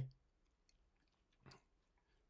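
Near silence, with a short faint mouth noise from the narrator about one and a half seconds in.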